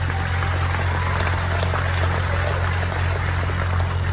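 Audience applauding, an even patter of many hands, over a steady low electrical hum from the sound system.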